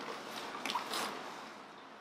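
Faint rustling of a plastic shipping bag and soft sloshing of the water inside it as it is lifted out of a styrofoam box, with a few small crinkles in the first second, then fading away.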